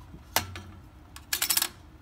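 Slotted metal weights set down on the stainless steel pan of a two-pan balance. There is a sharp clink about a third of a second in, then a quick run of small clinks a little after halfway as the weights settle against the pan and each other.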